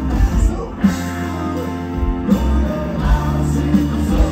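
A live southern rock band playing: electric and acoustic guitars over bass and a steady drum beat.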